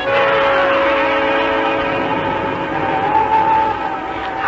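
Orchestral music bridge between scenes of a radio drama. It fades into long held chords, with a higher sustained note entering about halfway through.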